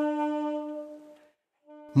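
A clarinet holds one long note of a slow song, which fades out over about a second. After a short silence, a brief note sounds just before the end and is cut off by a man's voice.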